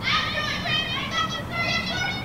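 Children's high-pitched voices calling out in the background in several short calls, with pitch bends.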